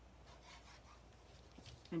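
Faint rubbing of a liquid glue bottle's applicator tip being drawn across the back of a sheet of patterned paper, with light handling of the paper.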